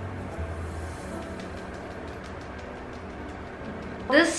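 Soft background music with sustained low notes.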